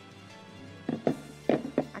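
Quiet background music, with a few light knocks and taps from a terracotta roof tile being handled and set down on a table, about a second in and again near the end.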